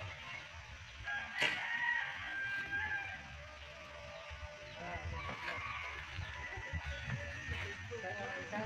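A rooster crowing once, starting about a second and a half in and lasting about a second and a half.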